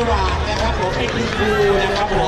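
Mostly speech: a man announcing over a public-address system, with crowd chatter around him.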